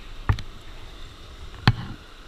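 Two sharp knocks about a second and a half apart, the second louder, from handling a plastic gold pan, over a faint steady hiss.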